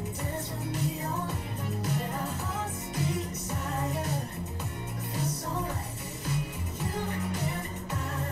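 Indonesian pop song playing: a sung vocal line over a steady bass line and percussion.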